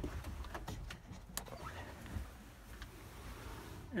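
Faint handling noise from a handheld camera being moved about: a low rumble with scattered light clicks and knocks.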